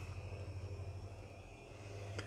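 Ford Transit Custom's diesel engine idling: a low, steady drone heard from inside the cab.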